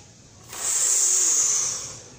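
A man slowly drawing a breath in through pursed lips, a steady hiss of air starting about half a second in and lasting just over a second. It is the slow, controlled recovery inhale a freediver takes at the surface after a blowout dive, so that a sudden wave is not gasped into the lungs.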